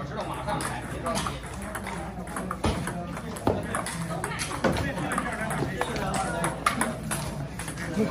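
Table tennis rally: a ping-pong ball striking the paddles and bouncing on the table, heard as an irregular series of sharp clicks.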